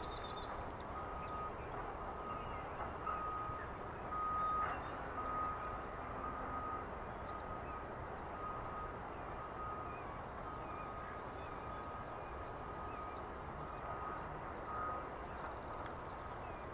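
Outdoor ambience: a low steady background rush with a faint high beep that repeats in short pulses throughout.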